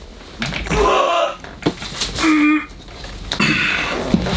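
Rustling and handling noises from a person moving about close by while fetching a boxed action figure, in two noisy spells with a short low tone between them.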